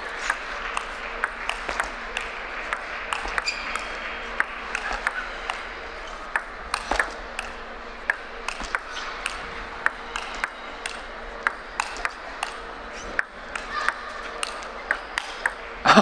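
Table tennis rally: a long run of sharp ball clicks off the bats and the table at an irregular pace.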